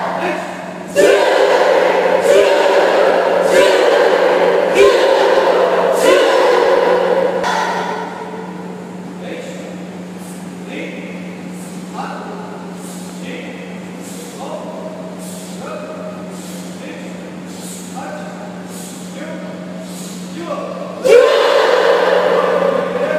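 A karate class calling out in unison, loud for the first several seconds, then quieter short calls with sharp snaps about once a second, over a steady low hum.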